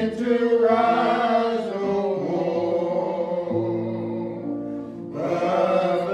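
Slow gospel singing with long held notes, with a short lull about five seconds in before the next phrase starts.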